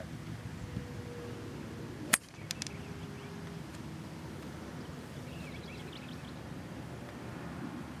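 A golf club striking the ball on a full swing from the fairway: a single sharp crack about two seconds in, over a steady background rush.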